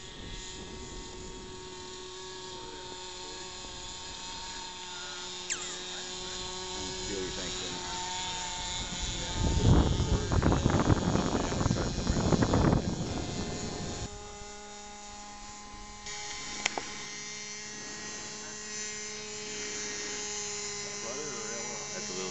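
Distant RC model autogyro's motor and propeller buzzing steadily in flight, with a few faint overtones above the main hum; the pitch steps up about two thirds of the way through as the throttle changes. Near the middle, a loud rushing noise swamps it for about three seconds.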